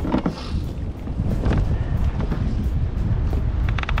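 Strong wind buffeting the microphone, a steady low rumble.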